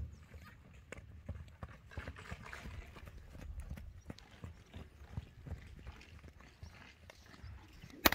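Hoofbeats of a mare and her foal trotting on sand: a faint, irregular run of thuds.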